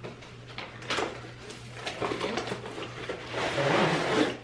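Cardboard box being opened by hand, with a few short clicks and rustles of the flaps, then a louder scraping rustle near the end as the tripod in its fabric carry bag slides out of the box.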